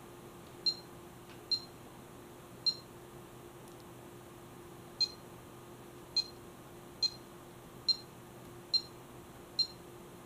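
Bully Dog GT gauge tuner giving a short, high beep at each button press, nine beeps at uneven intervals, as a gauge's displayed parameter is scrolled through. A faint steady hum runs underneath.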